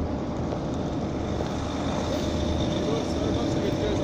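Steady low rumble of city street background noise, with traffic and wind on the phone's microphone.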